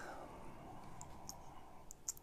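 Quiet room tone with a few faint, short clicks about a second in and near the end.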